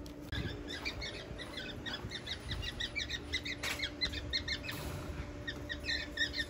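Cockatiels in an aviary chirping in a fast, steady stream of short, high calls: the birds are fighting.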